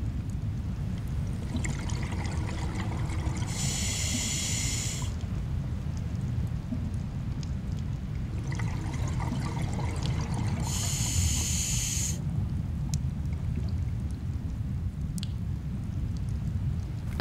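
Underwater sound of a scuba diver breathing through a regulator: two bursts of exhaled bubbles, each about a second and a half long and about seven seconds apart, over a steady low rush of water.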